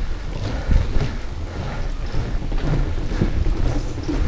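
Mountain bike tyres rolling over the wooden slats of a north-shore boardwalk: a steady low rumble with a few sharp knocks, under wind buffeting the camera microphone.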